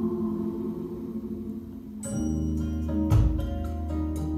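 Music played from a record through a pair of Tannoy 15-inch Monitor Gold loudspeakers, heard in the room. A sustained chord fades, then about halfway in a new passage starts with sharp-edged notes over steady bass, and a deep bass hit lands about three seconds in.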